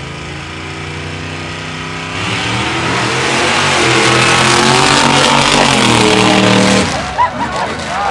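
Mud drag trucks' engines revving hard and running flat out down the mud track. The engine noise builds sharply about two seconds in, holds loud for several seconds, then falls away near the end as voices take over.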